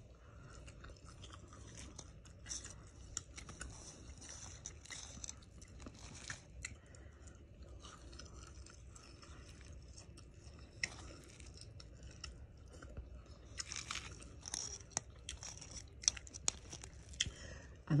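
A person eating crispy fried fish close to the microphone: faint chewing and crunching of the breaded crust, with scattered small clicks. Near the end comes a run of louder crisp crunches.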